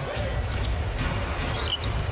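Basketball game sound from an arena: a basketball being dribbled on the hardwood court over a steady crowd murmur.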